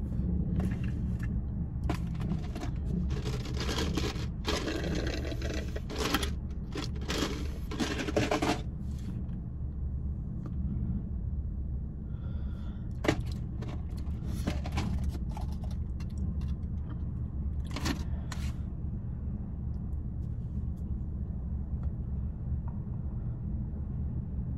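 A steady low rumble inside a car cabin, with a run of short hissing bursts in the first several seconds and a few sharp clicks later on.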